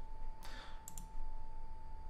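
Computer mouse clicks: two sharp clicks close together about a second in, after a softer rustle, over a faint steady hum.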